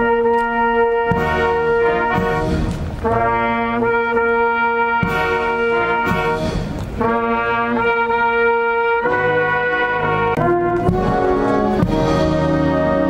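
Brass band playing slow, solemn held chords, each chord sustained about two seconds before the next.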